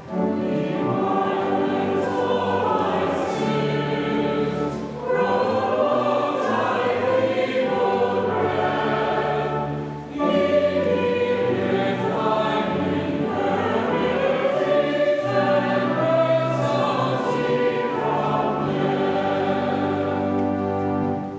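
Choir singing a hymn with pipe organ accompaniment, in phrases with short breaks between them.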